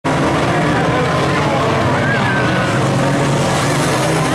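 A pack of banger racing cars with many engines running at once, a loud, steady layered drone. Spectators' voices carry over it.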